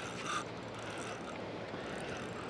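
Spinning reel being wound in against a hooked fish, its gears and drag working under a steady, fairly quiet sound.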